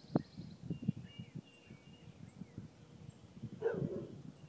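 Faint songbird chirps through the morning quiet, over scattered low knocks and thumps. A short, louder sound breaks in near the end.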